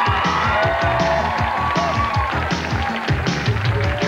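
Upbeat talk-show theme music with a steady driving beat, over a studio audience clapping and cheering.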